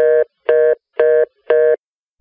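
Four short electronic beeps in a steady on-off pattern, about two a second, each one pitched tone with overtones, like a telephone busy signal.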